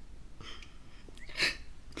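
A teenage girl's sharp, audible intake of breath between sentences, one short gasp about one and a half seconds in after a fainter breath earlier, as she reads an emotional statement close to tears.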